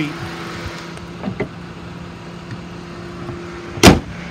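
2012 Ford Explorer's 3.5-litre V6 idling with a steady hum, with a couple of light knocks about a second in. Near the end the hood is slammed shut: one loud bang, the loudest sound here.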